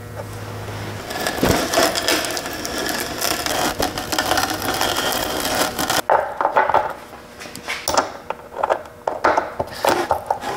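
Wood being worked by hand: dense scraping and rattling for about five seconds, then scattered sharp knocks and clicks of wood.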